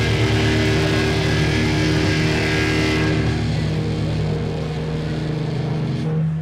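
Live rock band's distorted electric guitars and bass holding a ringing chord, with cymbals washing out over the first three seconds and the chord then sustaining on its own, the band ending a song.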